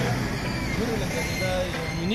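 A man speaking a few words over the steady noise of a running motor vehicle.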